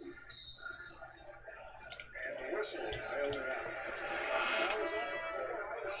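Faint background speech with some music, broken by a few sharp clicks about two and three seconds in.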